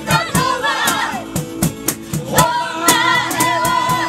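Live acoustic band music: several women sing together over acoustic guitars and a steady percussion beat, holding one long, wavering note in the second half.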